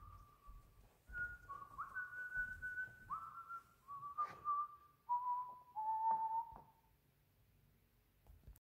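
A slow melody of single high, pure, whistle-like notes, about eight of them, each held under a second, mostly stepping down in pitch and ending about seven seconds in.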